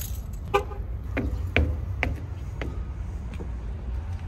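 Footsteps of canvas shoes on asphalt, about two steps a second, over a steady low rumble. A brief pitched toot comes about half a second in.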